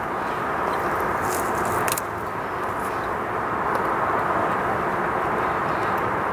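Rain falling steadily on the tent and tarp overhead: an even hiss, with a couple of faint taps in the first two seconds.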